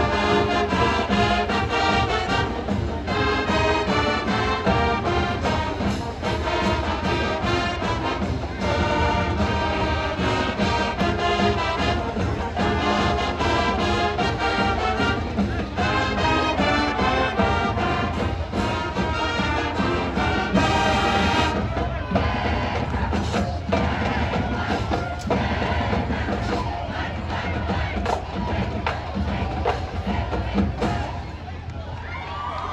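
High school marching band playing its fight song, full brass with trumpets and trombones over drums. The playing stops about two-thirds of the way through, leaving crowd noise with scattered drum hits.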